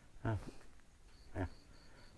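A pause in a man's talk, broken by two short low vocal sounds, about a third of a second and a second and a half in. A faint high-pitched chirp repeats in the background during the second half.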